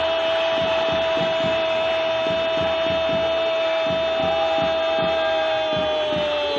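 A football commentator's single long, unbroken shouted goal call, one held high vowel that slides down in pitch near the end. A fast steady beat of low thumps, about four a second, runs underneath.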